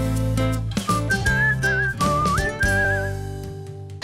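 A short TV programme jingle: a music bed with a whistled tune over it. The whistling comes in about a second in and stops about three seconds in, and the music fades toward the end.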